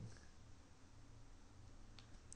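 Near silence: a pause in the narration with faint background hiss and hum.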